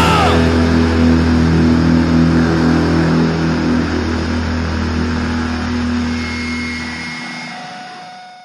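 The final chord of a hardcore punk song is left to ring out on distorted guitar and bass, held steady and slowly fading. A thin high feedback tone rises over it about six seconds in, and the bass cuts out near the end.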